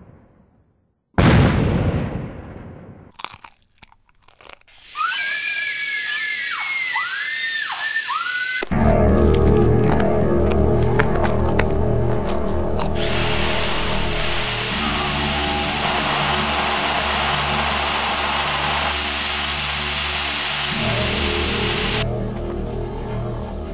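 Horror trailer soundtrack. A deep boom dies away, and a second loud boom follows about a second in. A few short crackling sounds come next, then a warbling, swooping electronic tone. Loud music with a beat starts about eight and a half seconds in and carries on.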